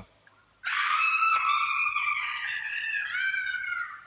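A woman's long, high wailing cry, starting about half a second in and held without a break, sinking a little in pitch near the end: the inhuman-sounding cries of the madwoman kept locked in the west wing.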